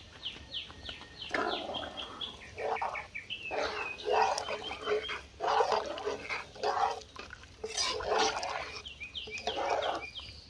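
Animal sounds: a bird giving quick high falling chirps, about three a second, near the start and again near the end, and in between a string of rough, noisy animal calls, each lasting about a second.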